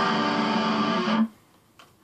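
A single guitar chord rung out and held steady for about two seconds, then cut off abruptly, followed by a faint click.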